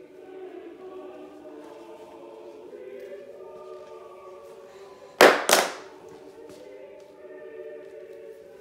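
Choral music with sustained, held voices. About five seconds in, two loud, sharp noisy bursts come in quick succession, about a third of a second apart.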